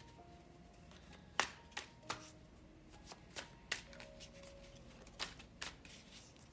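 A tarot deck being handled and shuffled by hand: several sharp card taps and slaps at irregular intervals.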